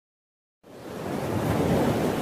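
Opening of an electronic pop track: after a moment of silence, a hiss-like noise fades in and builds to a steady level, like a synth noise swell leading into the beat.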